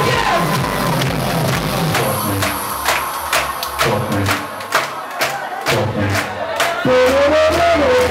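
Loud electronic dance music played over a nightclub sound system, with a steady beat and the voices of a crowd mixed in.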